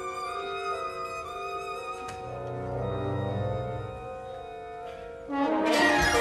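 Orchestral music from an opera, with no voice: soft held chords with a low swell in the middle, then a sudden loud full-orchestra entry about five seconds in.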